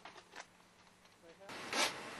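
A few faint clicks, then about one and a half seconds in the sound steps up and a short, loud rasping rustle follows.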